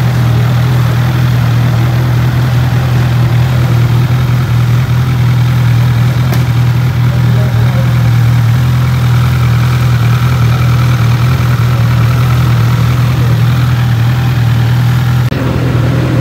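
2019 Honda CB1000R's inline-four engine idling steadily through its stock exhaust.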